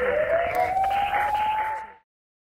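Siren-like sound effect in a programme's closing sting: one wailing tone that dips slightly and then rises slowly, over a noisy whoosh, cutting off suddenly near the end.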